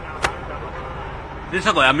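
Steady background noise with a low, engine-like rumble and faint voices, typical of an outdoor live field line. There is a sharp click about a quarter second in, and a man starts speaking loudly near the end.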